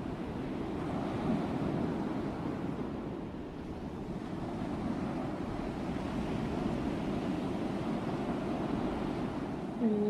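Gentle sea surf washing onto a beach: a steady rush that eases a little a few seconds in and then builds again.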